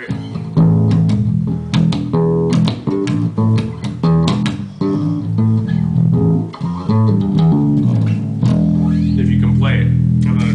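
Music Man StingRay electric bass with active electronics, played through an Ampeg SVT amplifier and 8x10 cabinet: a run of separate notes, then one note left ringing for the last second and a half.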